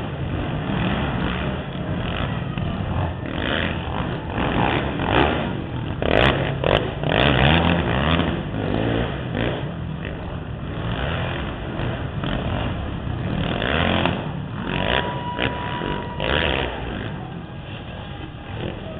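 Several racing quad engines revving and accelerating around a dirt track, the pitch rising and falling again and again as riders throttle on and off through the jumps. A few sharp clicks come about six to seven seconds in.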